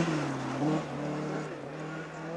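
Rally car engine revving hard, its pitch climbing and then dropping back, fading as the car goes away.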